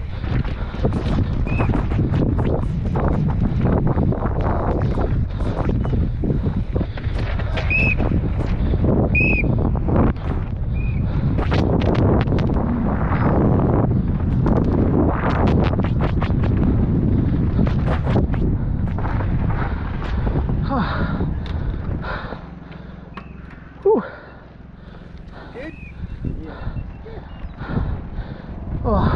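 Helmet-camera sound of a downhill mountain bike running fast down a dirt trail: wind rushing over the microphone, tyres on loose dirt and the bike rattling and knocking over rough ground, with a few brief squeaks. About 22 s in the noise drops away as the bike slows onto the gravel at the bottom, followed by one sharp sound.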